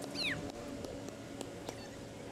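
A bird chirping: one short, high call that falls steeply in pitch just after the start, over a faint steady background hum.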